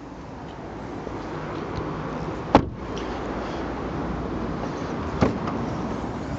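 A car door being shut on a Hyundai i30: one sharp knock about two and a half seconds in, then a lighter click about five seconds in, over steady outdoor background noise.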